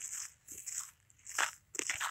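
Crunching and rustling from people walking, a handful of short, irregular crunches with faint hiss between them.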